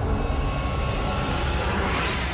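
Cinematic sound effect for an animated logo reveal: a loud, steady, deep rumble with a hiss over it.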